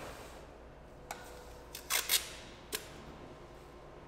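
Masking tape pulled from the roll and torn off in a few short, sharp, crackling bursts: one about a second in, a quick cluster near two seconds and one more shortly after. A low steady room hum runs underneath.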